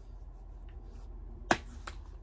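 Two sharp clicks about a third of a second apart, the first much louder, over quiet room tone.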